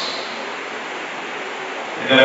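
A steady hiss of room and sound-system noise in a pause in amplified speech, with no voice in it.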